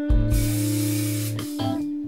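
Aerosol spray-paint can hissing as paint is sprayed onto a guitar body, in one burst of about a second and a half that stops shortly before the end.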